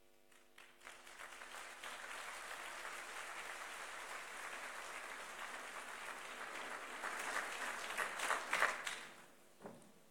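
A large audience applauding. The clapping builds within the first second or two, swells with louder individual claps near the end, then dies away about nine seconds in.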